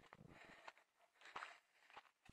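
Near silence with two faint footsteps on a gravel path.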